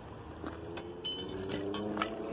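A steady, low engine hum in the background, with a few faint knocks in the second half.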